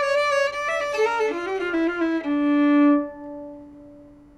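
Bowed carbon fibre violin playing a falling run of notes that ends on a long held low note, which then dies away near the end.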